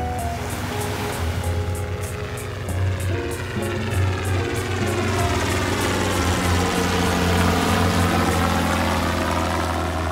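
Small helicopter flying overhead, its rotor and engine sound growing a little louder and sweeping in pitch as it passes, under background music.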